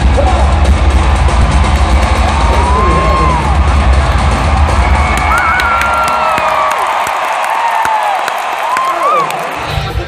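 Loud rock music with a heavy bass, and an arena crowd cheering and whooping over it. The bass drops out about halfway through, leaving the cheers and yells on top.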